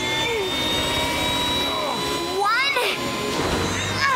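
Cartoon sound effect of a robot helicopter's ducted tail fan spinning: a steady high whine with rushing air, under background music. About two and a half seconds in, a short voice cry rises and falls.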